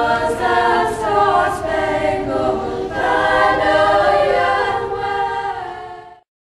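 A group of girls singing together as a choir, several voices holding and changing notes at once.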